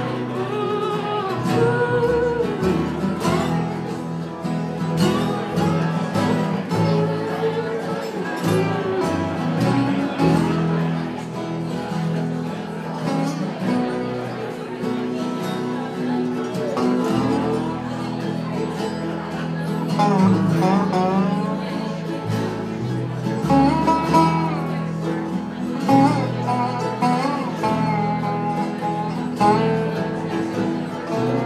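Acoustic string band playing live: acoustic guitar, mandolin, banjo, hollow-body electric guitar and upright bass in a blues-rock instrumental passage, with a bending, sliding lead melody over the accompaniment.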